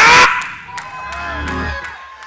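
A man's shouted word cuts off. Soft church music follows, with a held note and low bass underneath, and faint congregation voices.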